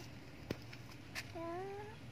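A cat meowing: one short rising meow near the end, part of a string of calls repeating about every second and a half. A sharp click about half a second in.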